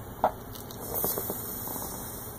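A brief sharp squeak or click, then a soft hiss lasting about a second: helium being breathed in from a balloon before a helium-voice line.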